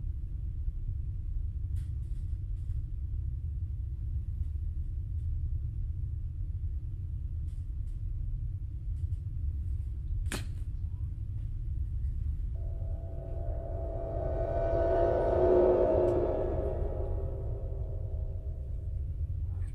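Low, steady rumbling drone of a suspense sound bed, with one sharp click about ten seconds in. After that a chord of held tones swells to a peak and fades near the end.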